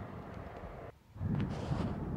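Wind rumbling on the microphone outdoors, with a brief drop about a second in before the rumble comes back stronger.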